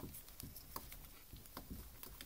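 Two ferrets play-fighting on a wooden floor: faint, scattered taps and scratches of claws and bodies scuffling on the boards.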